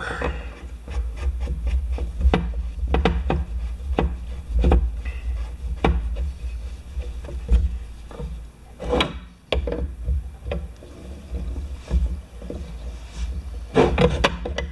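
Threading a brass unloader fitting into an Annovi Reverberi pressure-washer pump head and fitting a combination wrench to it: irregular small metallic clicks and taps, a few a second, over a low rumble of handling on the workbench.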